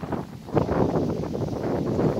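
Wind buffeting the microphone, a rough, uneven rushing that grows louder about half a second in.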